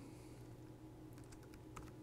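A few faint computer keyboard keystrokes over quiet room hum.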